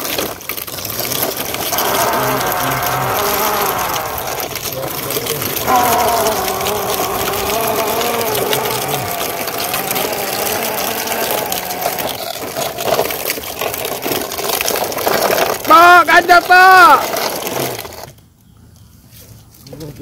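Long wavering vocal sounds over a steady rough noise, then a loud burst of several short rising-and-falling vocal calls near the end, after which the sound cuts off abruptly.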